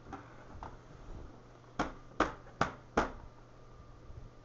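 Four sharp taps in quick succession, evenly spaced a little under half a second apart.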